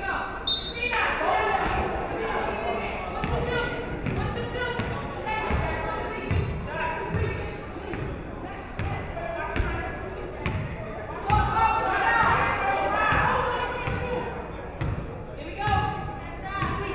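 Basketball bouncing on a hardwood gym floor, low thuds about once a second, over the chatter of voices around the gym.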